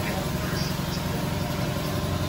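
An engine idling steadily with a low, even pulse.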